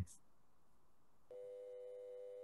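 Near silence, then about a second and a half in a faint, steady electronic tone like a telephone dial tone comes on abruptly and holds unchanged.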